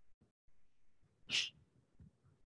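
A single short, sharp breathy burst from a person near the microphone, a little over a second in, over faint background noise.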